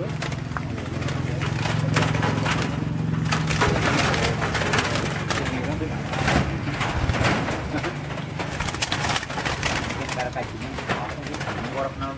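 Zebra doves (perkutut) cooing in breeding aviary cages, with scattered short knocks and rustles.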